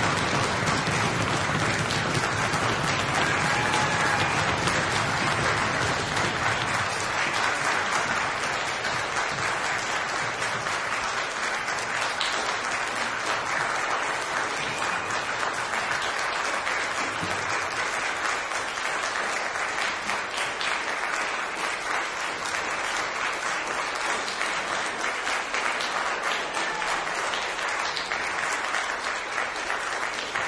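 Concert audience applauding steadily, easing off gradually.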